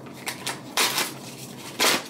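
Packaging of a new phone case being torn and crinkled open by hand, in several short rustling bursts, the loudest near the end.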